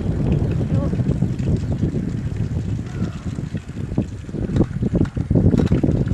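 Low rumbling wind noise on a phone microphone, with scattered short knocks from the phone being handled in the second half.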